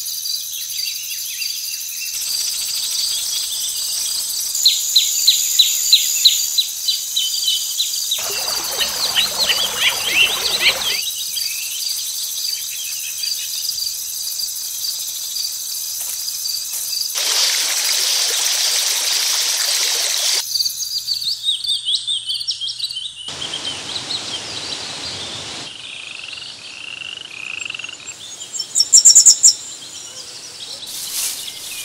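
Layered nature ambience: a steady high insect drone with runs of quick bird chirps, loudest about five seconds in and again near the end. Three stretches of rushing noise, each a few seconds long, cut in and out abruptly.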